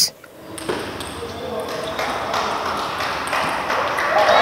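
Table tennis rally: a celluloid ball being struck back and forth, sharp pings of ball on bat and table at about two a second, over a background murmur of voices.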